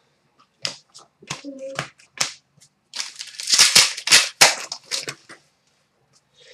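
Trading cards being handled on a glass counter: several sharp snaps and taps in the first couple of seconds, then a denser stretch of card-on-card rustling and clicks from about three to five seconds in, as cards are flicked through and set down on piles.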